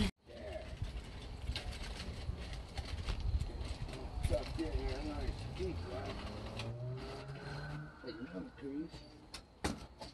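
Faint outdoor background with distant voices. A low engine hum rises about six and a half seconds in, as of a vehicle passing, and two sharp clicks come near the end.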